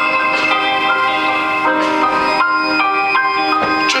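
Live band playing an instrumental passage between sung lines: a melody of notes stepping up and down two or three times a second over held chords.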